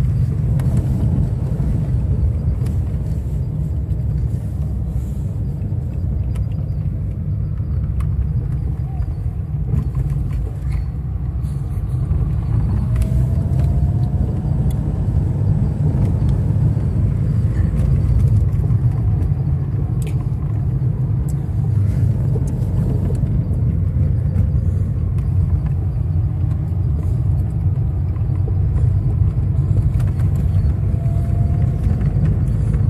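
Steady low rumble of a car's engine and tyres on the road, heard from inside the moving car's cabin.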